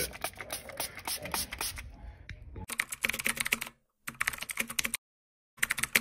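Computer keyboard typing sound effect accompanying on-screen text: rapid key clicks in runs. It is softer at first, louder from about two and a half seconds in, and breaks off for short pauses.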